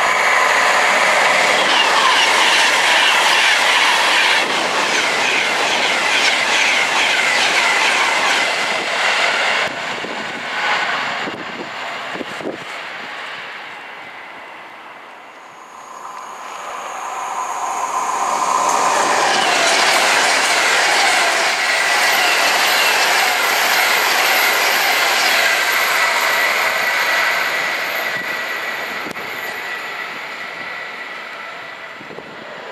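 Virgin Pendolino electric train running through a station on a curve: a loud rush of wheel and rail noise with a high, steady squeal-like whine. It fades away about halfway, then a second train's noise swells, holds loud and tails off near the end.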